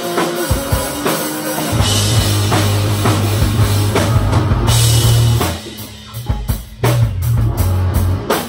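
Rock band playing live in a room: distorted electric guitars over a drum kit. About five and a half seconds in, the sustained guitar sound breaks off for about a second, leaving drum hits, then the full band comes back in.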